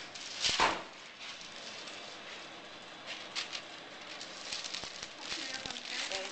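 Metal bench scraper working on a steel worktop and baking tray: one short scrape about half a second in, then scattered light taps and clicks as cut cookie dough is lifted and set down.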